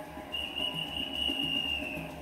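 A whistle is blown in one long, steady, high blast, dipping slightly in pitch as it stops, to start a sprint race. It is heard through a television speaker.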